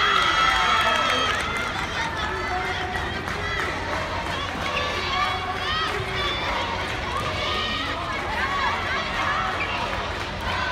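Many young girls' voices shouting and calling out at once, overlapping through the whole stretch, loudest in the first second or so.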